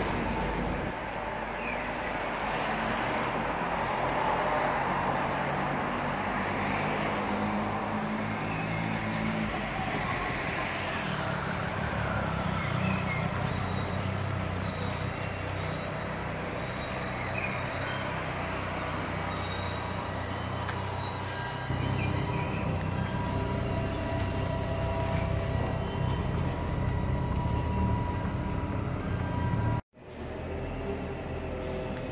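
Street traffic noise: a motor vehicle's engine runs nearby with a steady low hum that grows louder a little past two-thirds of the way through, over general city background.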